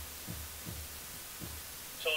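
A few soft low thuds at uneven intervals over a steady low hum, in an otherwise quiet hall.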